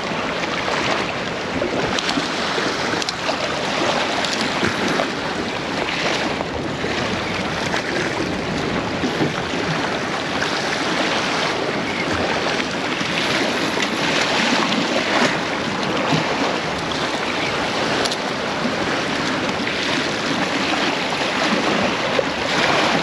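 Surf washing and breaking against granite jetty rocks, a steady rushing noise with wind on the microphone.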